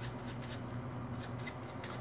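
A deck of playing cards being shuffled by hand: quiet, irregular light flicks of cards sliding against each other.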